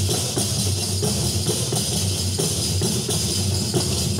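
Several panderetas, hand-held frame drums with jingles, beaten together in a steady rhythm: low skin strokes with the jingles shaking over them, as an instrumental lead-in before the voices come in.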